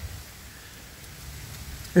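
Wind rumbling on the microphone: a low, steady rumble with a faint rustle above it, on a very windy day.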